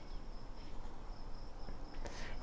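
Insect trilling outdoors: a steady, high-pitched tone that breaks off briefly now and then, over a low background rumble.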